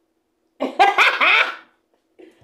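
A short, loud vocal outburst without words, starting about half a second in and lasting about a second, its pitch sliding up and down, like a laugh or exclamation.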